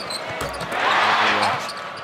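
Arena crowd cheering, swelling about half a second in and fading toward the end, the sort of roar that follows a home-team basket.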